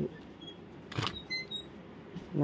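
Hanging curtains being pushed along a metal display rod: a single knock about a second in, then a few short, high metallic pings from the grommets on the rod.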